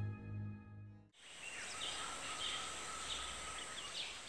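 A soft music cue fades out in the first second. After a short gap comes outdoor ambience: a steady hiss with a thin high whine, and birds chirping now and then.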